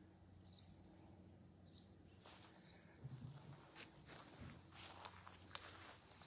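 Near silence: faint outdoor ambience with a short high chirp about once a second, and soft rustling and scuffing from about two seconds in, with one low thump about three seconds in.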